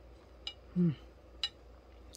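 A woman's short, falling "mmm" of enjoyment while eating cake, with two faint clicks about a second apart.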